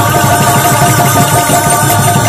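Loud kirtan music led by a hand-played barrel drum beaten in a fast, dense rhythm. Above the drum, a short note repeats quickly and a few steady tones are held.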